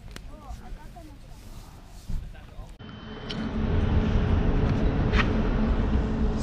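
Quiet outdoor background with faint high chirp-like traces, then, about three seconds in, a much louder steady low rumble of outdoor street noise.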